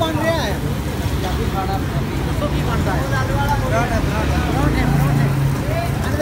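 Indistinct chatter of several voices over a steady low hum.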